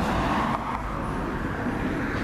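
Car driving past on a street: a steady rush of engine and tyre noise that eases slightly about half a second in.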